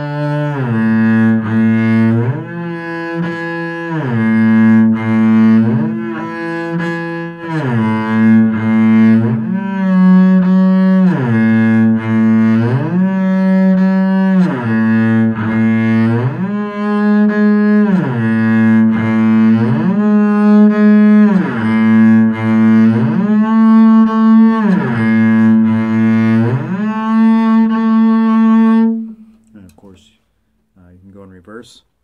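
Bowed double bass playing a shifting exercise: the pitch slides up to a note, holds, and slides back down, about once every two seconds, with the smear between notes audible, over a steady note that keeps sounding underneath. The playing stops abruptly about a second before the end.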